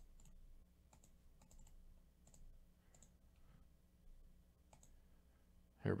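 Faint, irregular clicks of a computer mouse and keyboard, a dozen or so short ticks scattered across a few seconds. A man's voice starts right at the end.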